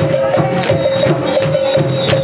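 Music with a quick, steady percussion beat, about four strikes a second, over a held note.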